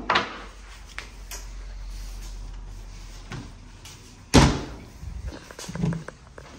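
Clear plastic safety cover of a break-test machine being handled and shut: a few light knocks, then one sharp bang about four seconds in, with a low hum in the first half.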